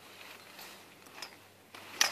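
Faint handling of a folding cot-tent's metal frame and fabric as it begins to be unfolded: a soft tick about a second in and light rustling near the end.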